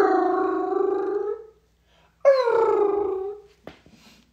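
A man's exaggerated mock wailing, like theatrical crying: two long drawn-out wails, each starting high and falling in pitch, with a short pause between them.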